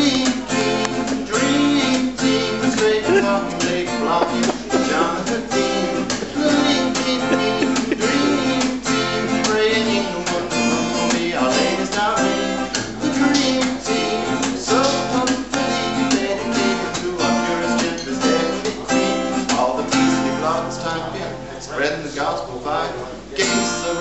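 Acoustic guitar strummed in a steady rhythm, accompanying a man singing a light-hearted song.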